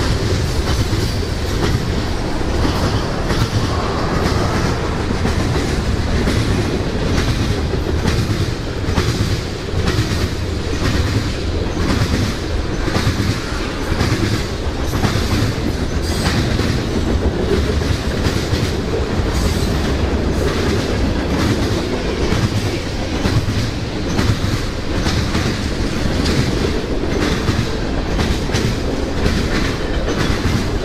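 Freight cars of a long mixed freight train (tank cars, centerbeam flatcars, boxcars) rolling past close by: a steady heavy rumble with a regular clickety-clack of wheels over the rail joints.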